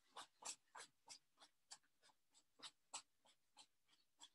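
Faint, rhythmic sounds of a person exercising in place, about three short scuffing bursts a second, from steps and breaths keeping pace with the movement.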